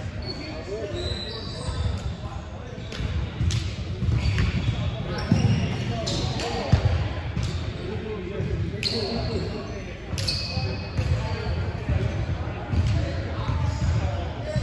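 Basketball bouncing on a hardwood gym floor at irregular intervals, with a few short high squeaks and players' voices, all echoing in a large gym.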